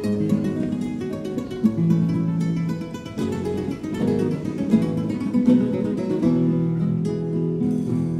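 Spanish acoustic guitars of a Cádiz carnival comparsa playing the instrumental introduction of its popurrí, strummed and plucked chords with sustained notes.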